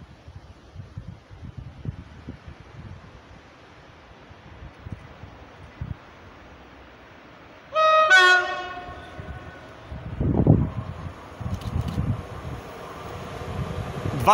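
PKP Cargo ET22 electric locomotive sounding its horn: one loud blast of about a second, partway through, as it approaches hauling tank wagons. Afterwards the rumble of the oncoming freight train grows louder.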